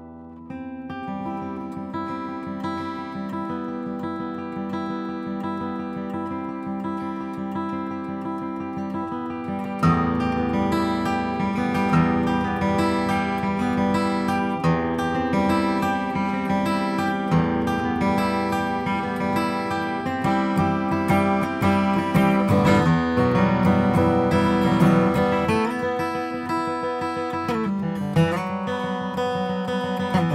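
Bedell Revolution Dreadnought acoustic guitar, with a solid Adirondack spruce top and cocobolo back, played solo and recorded dry without reverb. Ringing plucked notes and chords start softly and grow louder about ten seconds in.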